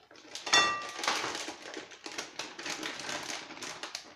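Clear plastic candy bag crinkling and rustling as it is handled, with a short ringing clink about half a second in, the loudest moment.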